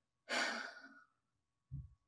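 A person's exhaled breath, a soft sigh lasting under a second that fades away, followed by a brief low sound near the end.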